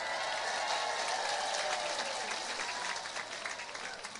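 Live audience applauding, many hands clapping at once with a faint murmur of voices, the clapping thinning out near the end.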